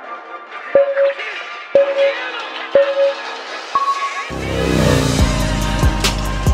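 Workout interval timer counting down to the next round: three short beeps a second apart, then one higher beep marking the start. Soft sustained music chords play beneath the beeps; about a second after the last beep a bass-heavy track with a drum beat comes in.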